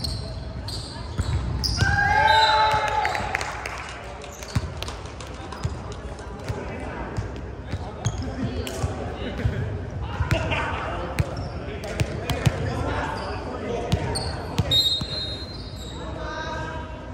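Volleyball players shouting and calling out, with a loud call about two seconds in and more voices later. Sharp knocks of the ball being hit and bouncing echo through a large gymnasium.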